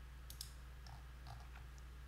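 Faint computer mouse clicks, a few scattered short ticks, over a low steady hum.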